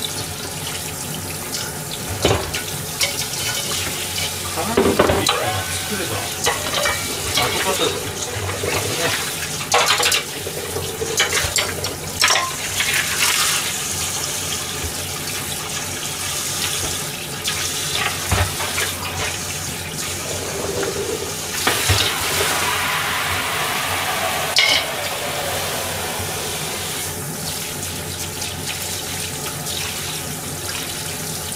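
Kitchen tap running into a stainless steel sink while dishes are washed by hand, with frequent short clatters of metal bowls and utensils knocking together.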